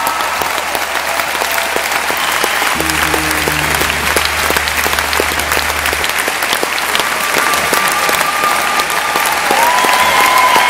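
Concert audience applauding, a dense patter of many hands clapping, with faint held musical tones underneath.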